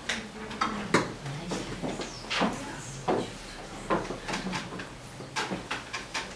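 Scattered light knocks and clatter, irregular and sharp, over faint murmuring voices: room noise between songs with no music playing.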